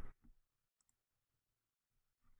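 Near silence: room tone, with a faint mouse click less than a second in.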